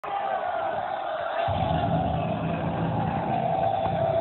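Backing music for a mime performance, with a held tone throughout and a low part coming in about a second and a half in, over the murmur of an audience.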